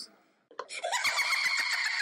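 A high-pitched, creepy laugh on a horror clip's soundtrack, cutting in suddenly about half a second in with a rapid run of cackles.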